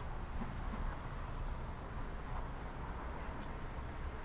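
Steady low rumble of outdoor city street background noise, with no distinct events standing out.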